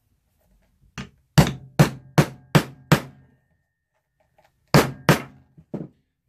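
Hammer strikes on a metal leatherworking tool driven into a leather sheath on the bench. The first strike comes about a second in, followed by five more at a steady pace of a little over two a second. After a pause come two more blows and then a couple of lighter taps.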